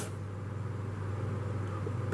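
Steady low hum with a faint even hiss: background room tone.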